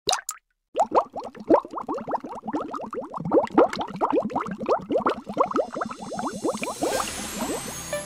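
Rapid run of bubbling water plops, each a short blip rising in pitch, several a second. Near the end they give way to a rising hiss and electronic music.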